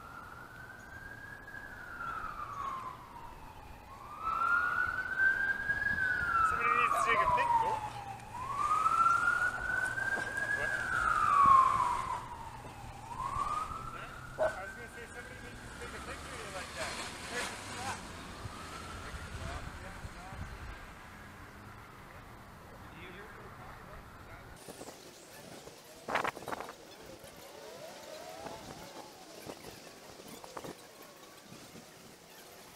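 Emergency vehicle siren wailing, its pitch rising and falling about once every four seconds, loudest in the first half and fading away after about sixteen seconds. A brief sharp knock sounds near the end.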